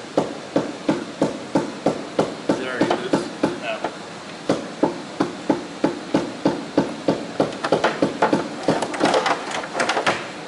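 Hand hammer blows inside a fiberglass boat hull, about three a second, with a short pause about four seconds in and quicker strikes near the end: breaking out rotten plywood from under the fiberglass deck.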